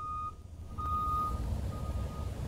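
Backup alarm of a reversing school bus: a single high beep repeating about once a second, with a low engine rumble underneath.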